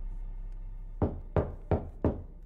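Three loud knocks on a wooden front door, evenly spaced about a third of a second apart, starting about a second in.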